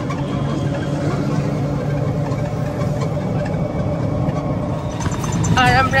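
Steady engine hum and road noise of a moving auto-rickshaw, heard from on board. Near the end a singing voice with a wavering pitch comes in over it.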